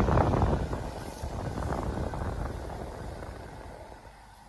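Low, gusty rumbling noise on the microphone, loudest at the start and fading away over the next few seconds.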